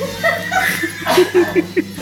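A person laughing in short, quick bursts, with a run of about five chuckles in the second half.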